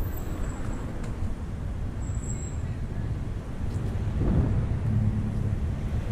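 Street traffic noise with a low rumble of wind on the microphone, recorded from a moving bicycle. About four seconds in, a passing motor vehicle's steady engine hum grows louder.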